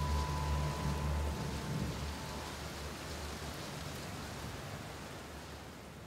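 A steady rain-like hiss under the last held low notes of the closing music, which die away in the first two seconds or so; the hiss then fades out slowly.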